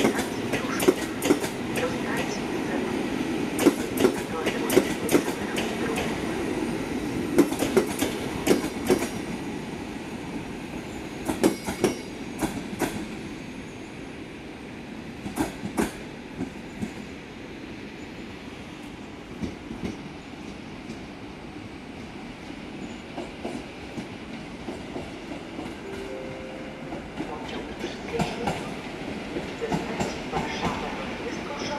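Wheels of a locomotive-hauled train of passenger coaches clicking over rail joints in quick succession as it rolls out. The clicks thin out and the rumble fades after about ten seconds as the train draws away.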